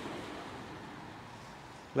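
Distant road traffic: a steady hiss of outdoor background noise that fades slightly toward the end.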